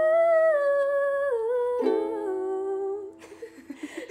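A voice humming one long held note that steps down in pitch about a second in, over strummed ukulele chords. Near the end the music breaks off into breathy laughter.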